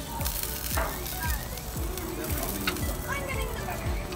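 Sausages sizzling on the grates of a gas grill, a steady hiss under background music.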